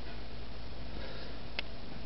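Steady hiss with a low electrical hum and no programme sound, the noise of a video-tape recording, with one faint click about one and a half seconds in.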